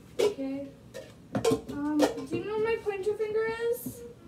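A young girl's voice in a sing-song, ending in one long held note of about a second and a half, with a few sharp knocks, one about a quarter second in and two more as the singing starts.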